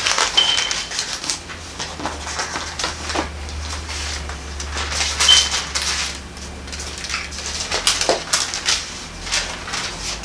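Thin paper pages of a Bible rustling and being turned by hand, a run of short, irregular crinkling sounds, over a low steady hum.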